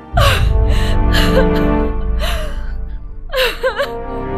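A woman sobbing, with several sharp gasping breaths and a wavering, wailing cry near the end, over a slow, sad orchestral film score whose deep low swell comes in right at the start.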